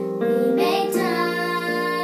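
Two young girls singing a Kingdom song together along with a played instrumental accompaniment, holding and changing notes in a slow hymn melody.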